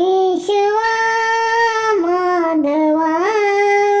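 A child singing a Marathi devotional prayer solo, holding long drawn-out notes that step down in pitch and then climb back up.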